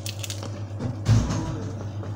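Rustling handling noise and a single dull thump about a second in, over a steady low hum.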